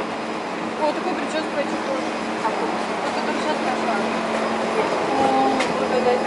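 Steady hum inside a metro train carriage standing at the platform with its doors open, under the chatter of passengers getting on.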